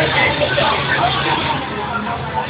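Crowd chatter: many people talking at once in a packed room, with music playing underneath.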